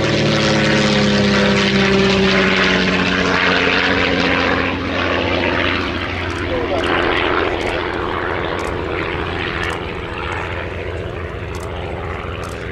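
Miles Magister's propeller and de Havilland Gipsy Major four-cylinder engine as the aircraft comes down onto the grass and rolls out. The engine note falls in pitch over the first few seconds as it passes and throttles back, then runs on steadier and quieter.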